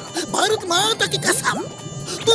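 High-pitched cartoon voices chattering over background music, loudest in the first second.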